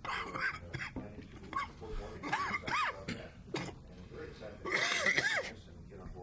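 Indistinct voices in the room, without clear words, with a couple of rising-and-falling vocal sounds.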